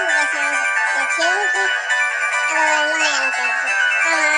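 Pop cover song: a voice singing a melody in short phrases that glide up and down, over a bright synth-pop backing track.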